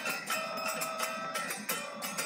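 Kirtan music in a pause between sung calls: steady held melodic notes with light, regular percussive strikes.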